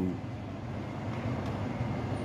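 Steady background noise: an even rush without any distinct events or tones.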